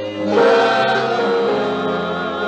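A choir singing gospel music, with long held notes.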